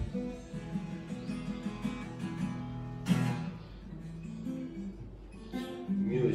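Acoustic guitar playing chords, with a louder strum about three seconds in.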